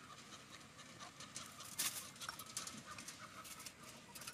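Faint, irregular crinkling and clicking of an aluminium-foil lid on a steel kulfi mould as a knife tip slits it to take a wooden stick.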